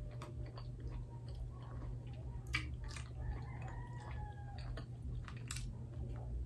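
Close-up chewing of soft, sticky Filipino rice cakes (puto and kutsinta), with many small wet mouth clicks and smacks, over a steady low hum.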